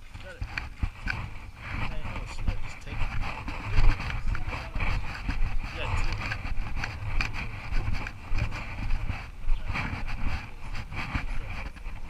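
Indistinct voices in a large hall, with frequent knocks and a low uneven rumble from a handheld camera being carried while walking.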